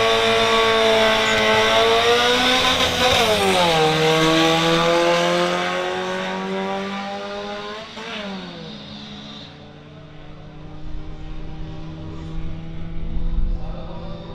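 Street-legal cars accelerating flat out from a drag-race launch, the engine note climbing through the gears with sharp upshifts about three seconds and eight seconds in. The sound fades as the cars pull away down the strip.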